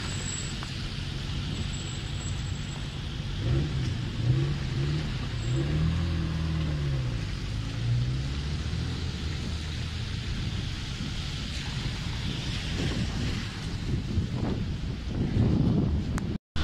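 Street traffic on a wet road: cars driving past with tyre hiss and engine rumble. Between about four and seven seconds in, one engine's pitch rises and falls several times, and the traffic grows louder near the end.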